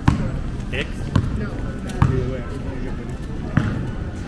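A basketball bounced on stone paving: four sharp bounces, unevenly spaced about a second apart.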